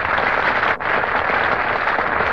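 Studio audience applauding steadily, with a brief dip just under a second in.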